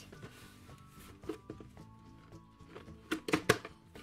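Quiet background music with steady held notes; about three seconds in, a quick cluster of sharp knocks and scrapes as a cardboard toy box is opened by hand.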